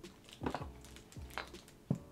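A few light clicks and knocks of handling as a nesting doll wrapped in a clear plastic bag is lifted out of its cardboard box, with faint background music underneath.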